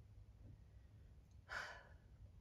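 A woman's short audible breath, a sigh-like exhale, about one and a half seconds in, over a faint steady low room hum.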